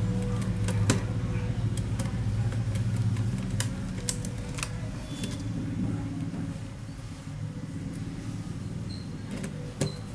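Scattered small clicks and taps of a screwdriver and screws against a laptop's metal chassis and motherboard, over a steady low motor hum that fades a little and shifts in pitch about halfway through.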